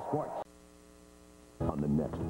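Faint, steady electrical mains hum in the silent gap between two taped TV promos: a voice cuts off about half a second in, the hum holds for about a second, and the next promo's voice and music start abruptly near the end.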